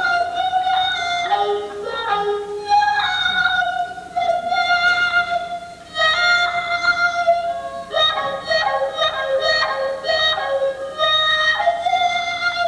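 Recorded violin played through a pillow speaker held in the mouth, the mouth shaping the sound so the violin seems to sing. Long held notes that shift pitch every second or two, with a brief dip in level about four and six seconds in.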